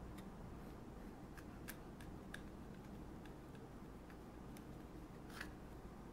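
Faint, scattered light clicks over a steady low room hum: thread being wrapped by hand around a jig head clamped in a tying vise.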